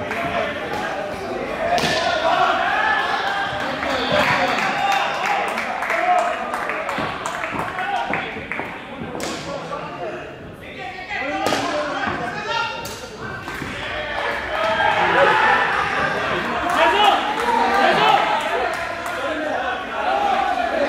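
Players calling and shouting to each other in a large echoing hall during an indoor cricket match, with several sharp knocks and thuds of the ball off the bat, the floor and the netting.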